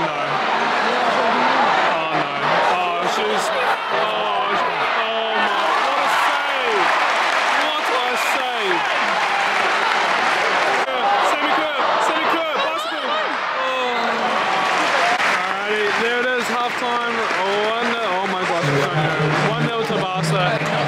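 Football stadium crowd: many voices calling and chattering at once, with applause running through.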